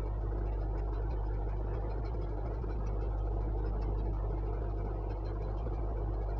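Steady low hum over even background room noise, unchanging throughout.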